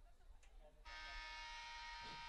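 Scoreboard horn sounding: a steady buzzing note that starts suddenly about a second in and holds at one pitch. It marks the clock running out at the end of the third quarter.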